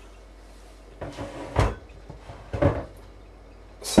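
Kitchen handling sounds: two short rustling bursts, each ending in a dull thump about a second apart, then a sharp knock near the end as a wooden wall-cupboard door is handled.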